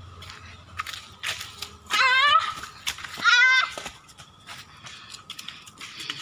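Two loud, wavering bleats a little over a second apart, typical of a goat, with light crunching of dry bamboo leaves underfoot.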